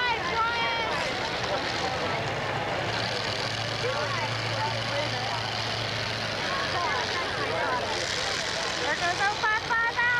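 Vehicle engines running at a demolition derby, with a steady low engine drone through the middle, under a haze of crowd noise; voices come through at the start and again near the end.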